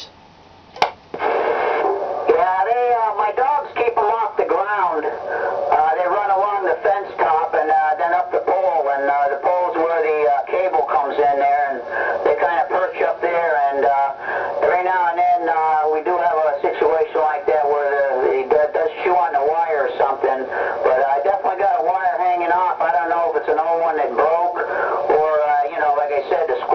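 A man's voice coming in over a CB radio on channel 28, heard through the radio's external speaker. It begins after a short quiet gap and a single click about a second in.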